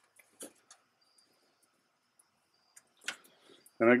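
A few soft clicks and light rustles of a thin cable and its plastic plug being handled, the loudest click about three seconds in. A man's voice starts near the end.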